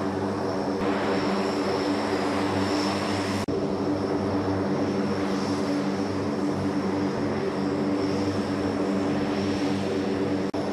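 Lockheed C-130J Super Hercules's four Rolls-Royce AE 2100 turboprop engines running on the ground, a steady propeller drone of several even tones with a faint high whine above it. A momentary dropout about three and a half seconds in.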